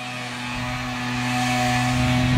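A car on a residential street approaching, its tyre and engine noise growing louder, over a steady low hum.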